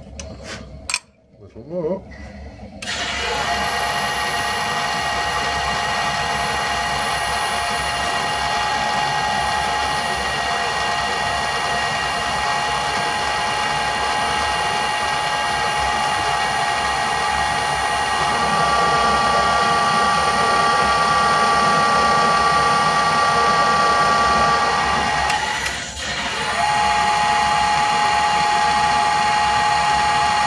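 Metal lathe running under power while cutting an M40x1.5 thread, with a steady whine from its gearing. It starts about three seconds in after a few clicks, dips for a moment near the end and resumes.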